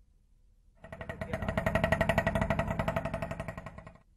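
A small vehicle engine running with a fast, even pulsing beat. It starts about a second in, grows louder, then fades near the end.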